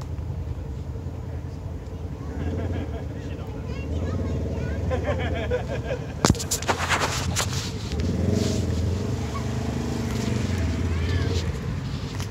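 Off-road Jeep's engine running at low revs as it crawls slowly over rocky ground on big mud tires. About six seconds in there is a sharp crack, followed by a second or so of clattering and crunching.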